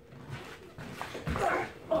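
Interior bedroom door pushed shut, closing with a thump a little over a second in, followed by a brief whining sound.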